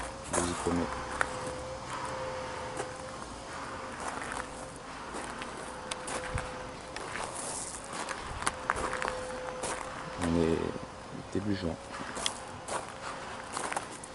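Footsteps crunching on gravel, with a faint steady buzz underneath throughout.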